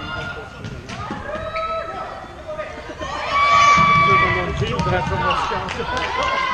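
Floorball game sounds in an echoing sports hall: players calling out to each other, with sharp clacks of sticks and the plastic ball and running feet on the court floor. The loudest sound is a held high call near the middle.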